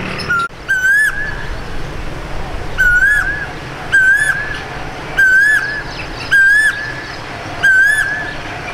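A bird calling over and over: a short, loud note that rises and falls, repeated about every second and a bit, over a low steady background rumble.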